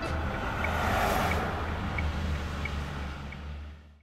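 Road traffic heard from inside a car: a steady low engine and road rumble, with a vehicle swishing past about a second in. A faint tick recurs about every two-thirds of a second, and everything fades out near the end.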